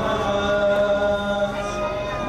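A male voice chanting a Shia mourning lament (noha) for Imam Hussain, holding one long note that changes near the end.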